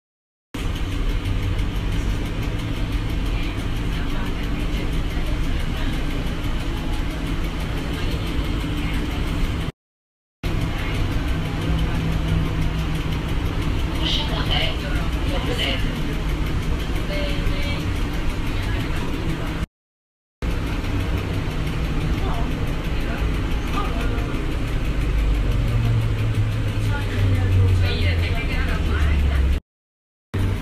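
Inside a NAW trolleybus under way: a steady low electric drive hum with road rumble. It comes in three stretches of about ten seconds each, cut by brief silent breaks. The low rumble grows louder near the end.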